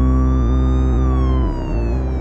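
A police siren wail: one tone that climbs slowly, peaks about a second in, then falls. It sits over a loud, low, sustained dramatic music score.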